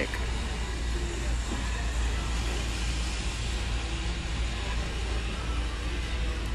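Steady low rumble with an even hiss: the background noise of a large store picked up by a moving phone microphone, with a few faint snatches of distant voices.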